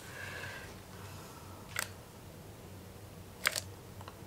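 Two light clicks, about a second and a half apart, over faint room noise, from handling a plastic measuring jug and a handheld infrared thermometer while the melted soap base is checked.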